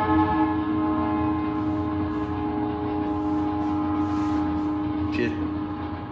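A train horn sounding one long, steady note that holds for about five seconds before cutting off near the end.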